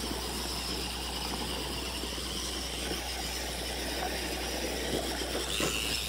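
RC buggy's motor and drivetrain whining steadily as it climbs a steep slope of loose dirt, with its tyres scrabbling and crunching on gravel. The whine rises near the end.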